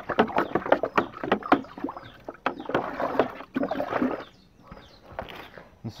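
Seawater mix sloshing and splashing in a plastic bucket as a hand stirs it. A quick, irregular run of splashes dies away about four seconds in.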